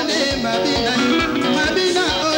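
Live African band music: interlocking electric guitar lines and bass over a drum kit with a steady kick-drum beat, with voices singing.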